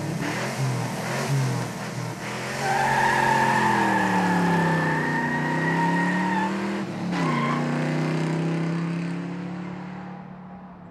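A car engine revving, with tires squealing for a few seconds in the middle while the engine pitch dips and climbs again. The engine then holds steady and fades near the end.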